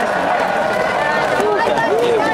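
High school baseball cheering section in the stands: many voices shouting together, loud and steady, with a few rising-and-falling shouts near the end.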